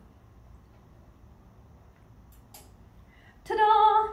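Quiet room tone with a faint click, then near the end a woman's voice holding one short, high, steady note.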